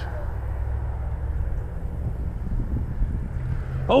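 Wind buffeting the microphone: a steady, fluctuating low rumble.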